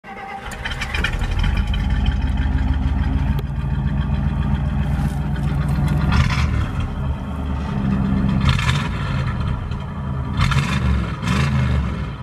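A car engine running with a heavy low rumble, revved up several times in the second half, about every two seconds.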